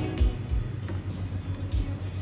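Background music with a low, regular beat over a steady low hum.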